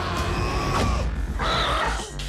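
A vampire in a film fight scene gives shrill, raspy screeches, one in the first second and another about a second and a half in, over a steady low rumble in the score.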